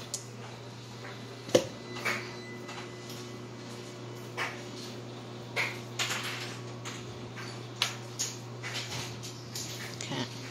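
Hands patting and pressing raw ground meat into a patty: short wet slaps and squelches at irregular intervals, the sharpest about one and a half seconds in, over a steady low hum.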